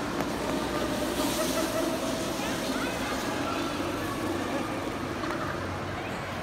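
Indoor ice rink ambience: scattered voices of skaters over a steady hum.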